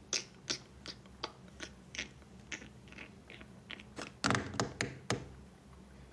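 Light taps on a phone as it is handled, about three a second, with a louder cluster of knocks a little past four seconds in.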